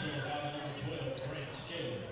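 Voices echoing in a gymnasium, with a basketball bouncing a few times on the hardwood floor.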